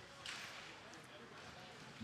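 Faint ice-rink game sound, skates and sticks on the ice, barely above near silence.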